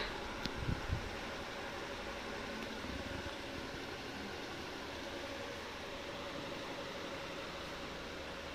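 Steady hum and hiss of room air conditioning with a faint steady tone, and a few soft knocks in the first second.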